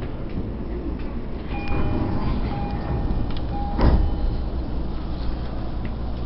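Commuter train's sliding doors closing at a station stop: a warning tone sounds in broken beeps, then a sharp thud as the doors shut just before four seconds in, over the train's steady low rumble.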